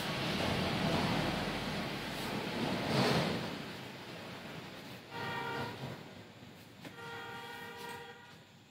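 A cloth wiping marker off a whiteboard, a rubbing sound that fades over the first four seconds. It is followed by two steady horn-like tones: a short one about five seconds in and a longer one, about a second long, near the end.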